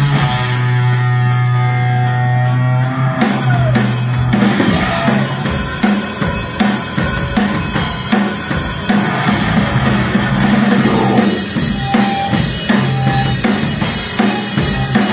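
Live metal band playing loud: a chord is held for about three seconds, then the drum kit and full band come in with a steady, driving beat.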